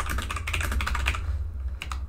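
Computer keyboard typing: a quick run of keystrokes that stops about three-quarters of the way through, then a couple of last key clicks near the end.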